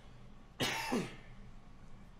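A man coughs once, about half a second in: a short rough burst that falls in pitch.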